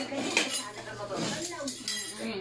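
A few sharp clinks of metal utensils against cookware: one right at the start, one about half a second in, and a couple near the end.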